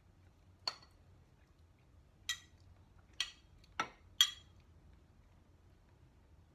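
A metal spoon clinking against a dish as chopped tomatoes are spooned out, five sharp clinks spread over a few seconds, the last the loudest.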